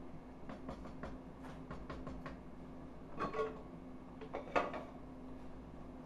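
Wooden spoon stirring and scraping in a cast iron pot of beans, making a string of soft clicks and taps, with two louder knocks about three and four and a half seconds in. A steady low hum runs underneath.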